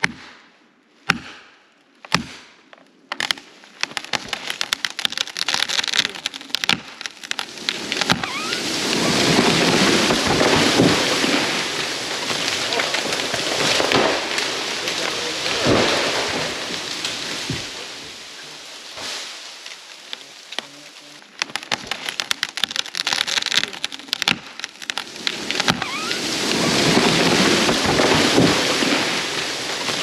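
An axe strikes felling wedges in a tree's back cut about once a second, then the wood starts cracking and popping as the hinge gives. A long, loud crashing rush follows as the tall dead pine falls through the surrounding trees and debris comes down, easing off and swelling again near the end.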